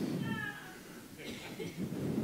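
Faint voices from the congregation: a short high-pitched call in the first half second, then low murmured responses.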